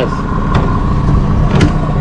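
Mercury outboard motor running steadily at trolling speed, a constant low hum with a faint steady whine above it.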